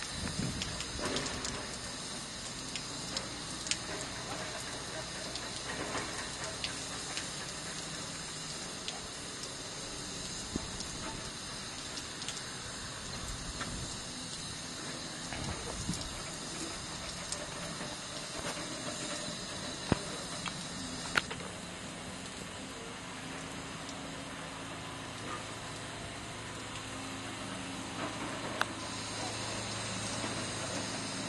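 Steam tank locomotive standing at a water column while taking water: a steady hiss, with scattered sharp clicks and knocks. A low steady hum comes in near the end.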